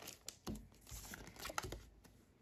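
Faint crinkling and a few light ticks from a freshly opened Pokémon booster pack being handled: the cards and foil wrapper rustle in the fingers.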